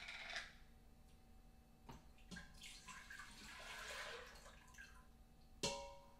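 Faint kitchen handling sounds: a few light knocks and a soft rushing noise from about two seconds in, over a low steady hum.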